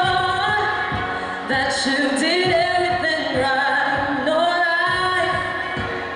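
A solo voice singing into a handheld microphone, holding and bending long notes over backing music with a steady beat.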